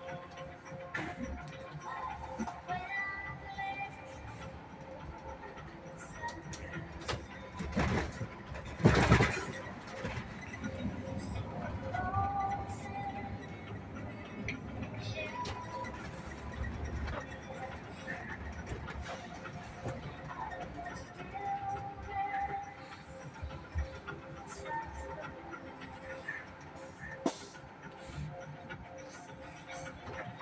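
Inside a moving bus: quiet music and indistinct voices over the low rumble of the bus, with one loud knock about nine seconds in.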